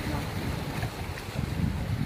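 Wind noise on the microphone over small sea waves washing across flat shore rocks.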